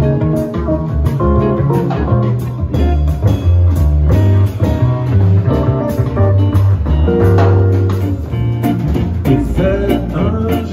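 A live swing-jazz band playing an instrumental passage: several guitars pick the tune over a walking upright double bass and a drum kit.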